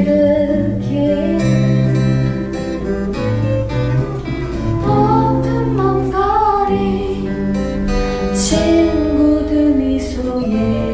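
A woman singing a slow song in Korean, accompanied by two acoustic guitars, performed live into a microphone.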